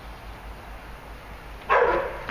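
A dog barks once, loudly, near the end, over a steady low outdoor rumble.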